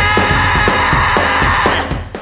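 Live rock band playing: a sustained, held chord over drum hits about twice a second, stopping abruptly at the very end.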